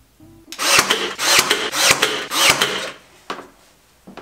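Rasping strokes of a hand tool working wooden trim, about five strokes in quick rhythm, then a single light tap.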